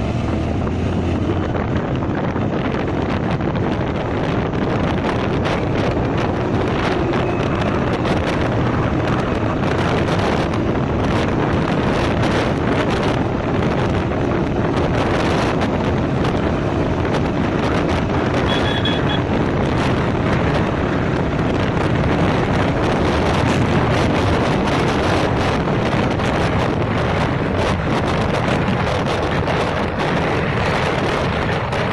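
Steady, loud wind rushing over the microphone of a camera on a motorcycle riding at road speed, with the bike's running noise underneath.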